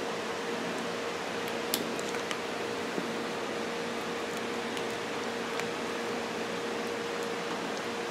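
Steady electrical hum with a single tone over a hiss, and a few small clicks as wire plug connectors are handled and pushed together.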